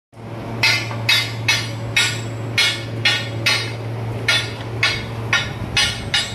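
Hammer blows on steel, about two a second, eleven strikes with a brief pause midway, over a steady low hum.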